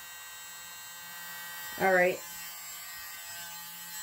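Small handheld electric mini blower running at a steady pitch, a motor hum with a thin high whine, held between passes over wet acrylic paint.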